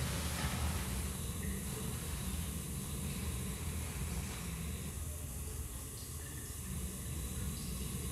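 Steady low rumble and rushing noise on a phone microphone muffled inside a fluffy glove, with no distinct event.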